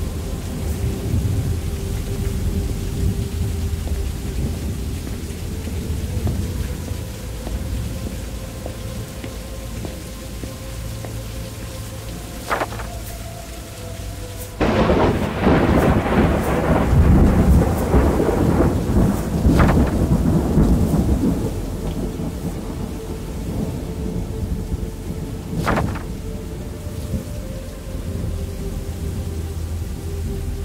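A thunderstorm with steady rain and low rumbling. About halfway through, a sudden loud thunderclap breaks out and rolls on for several seconds before fading back into the rain.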